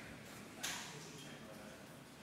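A quiet hall with a waiting audience: faint murmur and room noise, broken a little over half a second in by one short, sharp noise that fades quickly.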